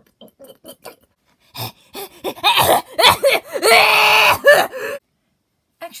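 A loud, wordless vocal sound from a person, rising about a second and a half in and lasting about three seconds, after a few faint clicks.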